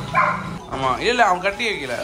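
Goat bleating in a quick run of wavering, rising-and-falling calls while it is held and pulled along.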